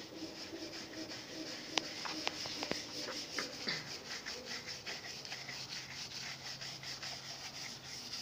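Stiff scrubbing brush worked back and forth over a wet steel drill hammer coated in degreaser: a continuous scratchy rasp of bristles on metal, with a few sharp clicks about two seconds in.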